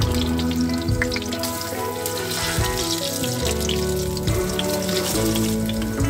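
Fritters sizzling and crackling in hot oil in a frying pan, under background music of slow, held notes.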